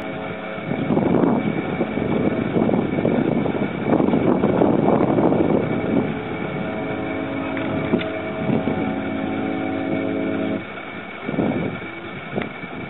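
A steady mechanical hum made of several even tones, which cuts off suddenly about ten and a half seconds in. Wind buffets the microphone in gusts, strongest in the first half.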